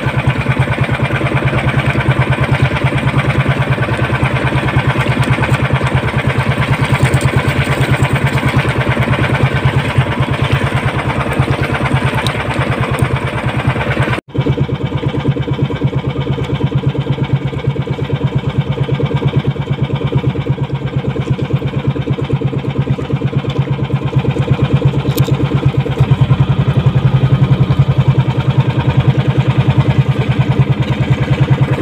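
Engine of a small outrigger boat (bangka) running steadily with a fast, even pulse. The sound cuts out for an instant about halfway through.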